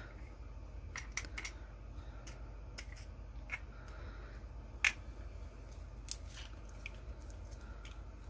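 Scattered light clicks and taps of small plastic alcohol-ink bottles and medicine cups being handled on a work table, the loudest a sharp tick about five seconds in, over a low steady hum.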